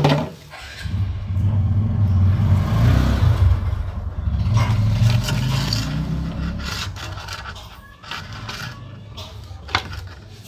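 Close-up rubbing and scraping as a plastic bottle is pushed and worked into place against a motorcycle's underside, dense and rumbling for several seconds before easing off. A short sharp click comes near the end.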